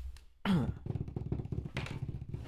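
A person's voice making a low, rattling buzz, starting about half a second in with a quick downward slide in pitch.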